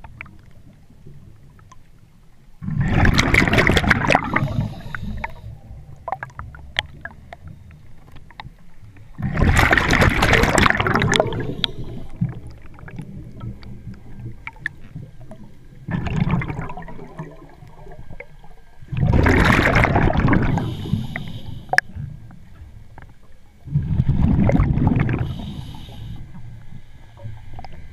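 A scuba diver's regulator underwater, releasing bubbles with each exhaled breath: five loud bursts of bubbling, each one to two seconds long, coming about every five to six seconds in a steady breathing rhythm.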